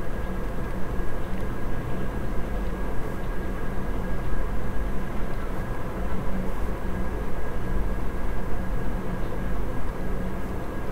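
Steady low rumbling background noise with a faint high-pitched whine running through it.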